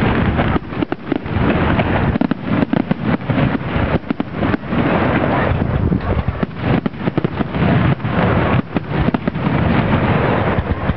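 Aerial fireworks shells bursting in a rapid, overlapping barrage of loud bangs, one after another with no let-up, as heard through a small camera microphone.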